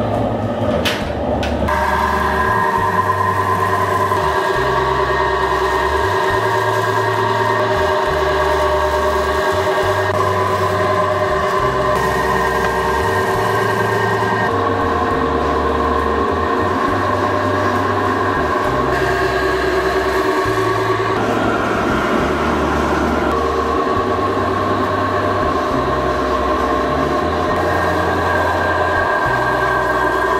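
Background music: sustained chords that change every few seconds over a steady, repeating bass pattern.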